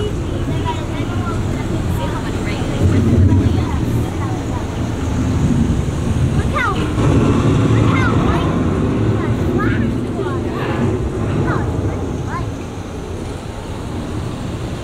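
Ride show soundtrack of a forest after a storm: a steady low rumble, with short falling bird chirps from about six seconds in.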